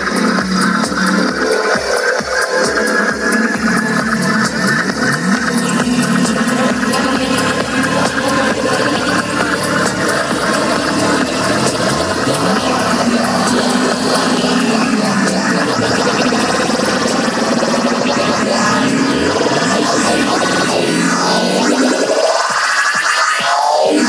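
Loud electronic dance music from a DJ set, played over a large PA sound system, with a steady kick drum. A couple of seconds before the end the bass drops out and a rising sweep builds.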